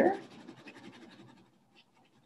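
Gray wax crayon rubbed lightly across watercolour paper in quick back-and-forth strokes: a fast, fine scratching that fades away over the first second and a half.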